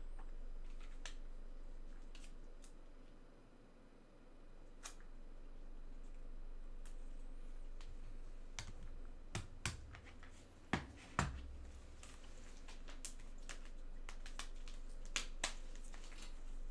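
Scattered small clicks and taps of hands working at a desk, with two sharper knocks about eleven seconds in and another pair near the end, over a faint steady low hum.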